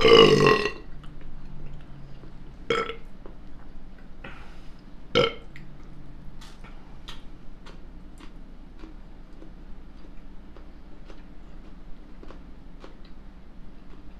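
A man burps loudly once, a belch of about half a second. Two shorter, quieter sounds follow, around three and five seconds in.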